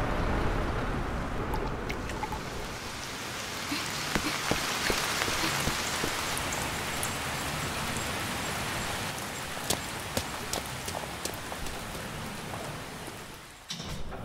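Steady heavy rain falling, with scattered sharp drop ticks on hard surfaces; it drops away just before the end.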